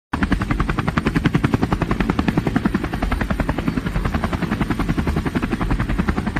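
Helicopter rotor chopping in a rapid, even beat, about seven or eight blades a second, over a steady low engine rumble.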